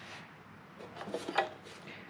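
A quiet room, with a few faint soft knocks and rubbing sounds about a second in, like a small object being handled.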